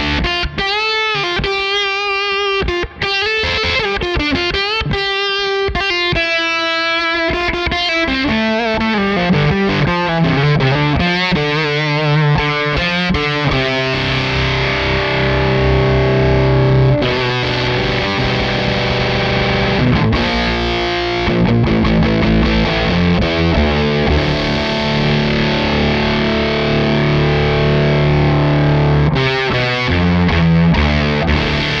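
Les Paul-style electric guitar played through the Crazy Tube Circuits Motherload distortion/fuzz pedal. For the first several seconds it plays a single-note lead line with bends and vibrato, then it moves to sustained distorted chords and riffs.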